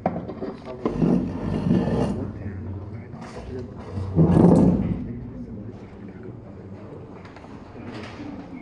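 Muffled, indistinct talking in a room, loudest in two stretches: about one to two seconds in and again about four seconds in.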